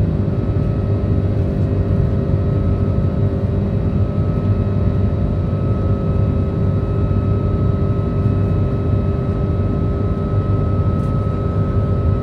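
Airliner cabin noise: the steady drone of jet engines and airflow heard from inside the passenger cabin, with a faint steady whine that grows clearer about halfway through.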